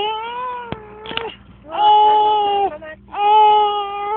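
An 11-month-old baby crying in three long, steady-pitched wails with short breaths between them, the second and third the loudest.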